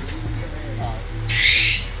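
A pet monkey giving one short, harsh, high-pitched screech about halfway through.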